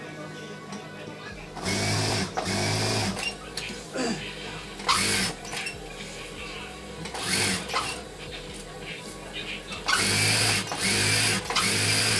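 Industrial lockstitch sewing machine stitching in short runs, with the longest, steadiest run near the end, as foam-lined pillow fabric is fed through for diagonal quilting seams. Between runs the fabric rustles as it is turned and repositioned.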